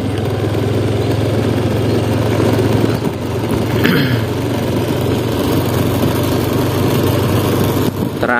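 A motorcycle engine running steadily at low speed while riding slowly, a constant low hum with rushing noise over it. A brief higher sound comes about four seconds in.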